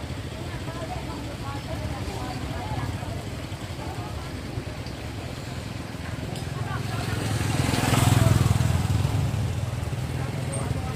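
Street ambience: a steady low rumble of road traffic with indistinct voices, swelling loudest about eight seconds in as a vehicle passes close by.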